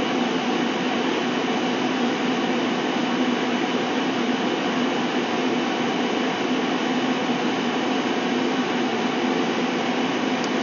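A steady mechanical whir with a constant low hum, unchanging throughout.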